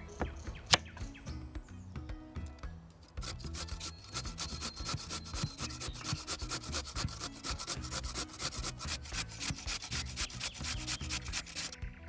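A knife cuts through butternut squash onto a wooden board with a sharp knock about a second in. From about three seconds on, a chunk of squash is rubbed quickly up and down a metal cone grater in rapid, even rasping strokes as it shreds.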